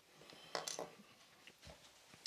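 Faint handling sounds: a few soft clicks and light taps as the small plastic earbud is picked up off the desk.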